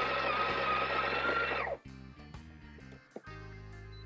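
Built-in burr grinder of a Breville Barista Touch Impress running for just under two seconds with a steady whine, topping up the coffee dose in the portafilter, then cutting off sharply. Background music plays underneath.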